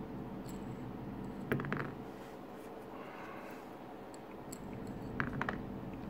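Faint clicks and light scraping of a small cylindrical magnet touched against a 1 oz silver coin in a magnet test: a soft tap about a second and a half in and a few quick clicks near the end.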